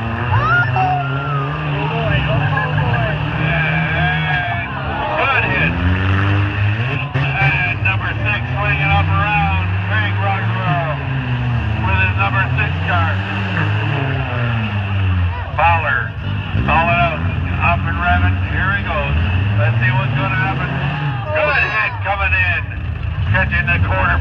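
Several demolition derby cars' engines revving, their pitch rising and falling again and again with overlapping throttle blips.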